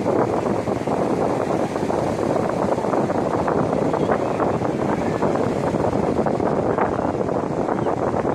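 Steady beach ambience: a continuous rushing noise of wind and surf with a murmur of crowd voices, unbroken throughout.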